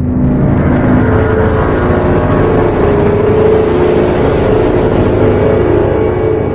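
Loud, steady drone of an intro sound effect, starting abruptly, dense and low with a held tone in it.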